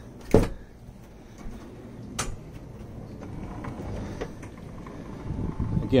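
A fibreglass deck hatch lid closing with one hard thump about half a second in. A lighter click follows about two seconds in, then low shuffling and handling noise.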